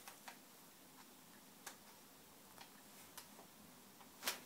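Near silence, broken by about five faint, irregularly spaced crinkles of wrapping paper as a cat noses into a wrapped present.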